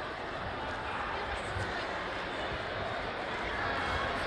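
Steady background chatter of a crowd in a sports hall, the many voices blending into an even murmur with no single voice standing out.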